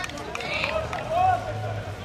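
Football players and people at the touchline shouting during play, with no clear words. The loudest is one call a little past a second in.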